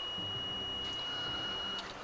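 Digital multimeter's continuity tester giving one steady high beep for nearly two seconds, then cutting off sharply. It means the probes see a closed circuit: the wire is well connected through the soldered hinge.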